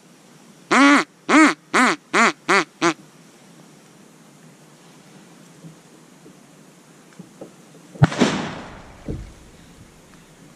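Six loud quacks in a quick run, each shorter and closer to the next than the last, in the pattern of a hen mallard's descending call. About eight seconds in, a single sharp bang rings out and dies away over about a second.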